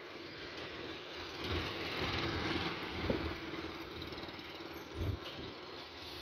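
A motor vehicle going by on the street, its noise swelling and fading, with two short dull thumps about three and five seconds in.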